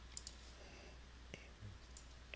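Near silence with a low steady hum, broken by a few faint, short clicks from the pen or input device used to draw.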